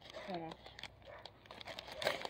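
Faint crinkling of a plastic bag with scattered small clicks, and a brief low vocal sound about a third of a second in.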